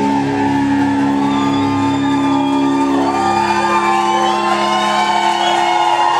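A live rock band's closing notes held and ringing on as steady sustained tones, with the drums stopped. An audience shouts and whoops over it, more from about halfway through.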